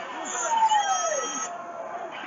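Audio from a televised wrestling match: a single voice-like cry that slides down in pitch about half a second in, over the steady background noise of the broadcast.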